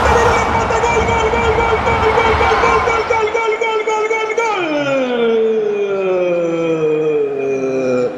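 A football radio commentator's long, held goal cry: one sustained note for about four seconds, then a slow slide down in pitch to the end. A stadium crowd cheers beneath it for the first few seconds.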